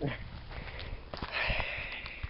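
Sniffing and breathing, with a longer hissing breath in the second half, over rustling in dry grass and a few soft knocks.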